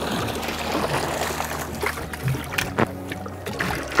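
A cast net splashing onto the sea and water dripping and splashing as it is hauled back up, with a few short sharp splashes, under background music.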